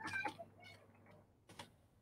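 Faint computer-keyboard keystrokes: a few soft, scattered clicks as text is typed.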